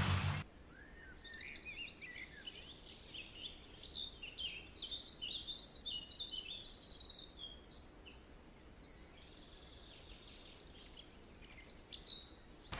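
Small birds chirping and singing, with quick high chirps and short trills that come thicker around the middle.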